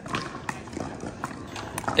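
A few light, short knocks about every half second on a hard pickleball court, over a faint background hum of the outdoor courts.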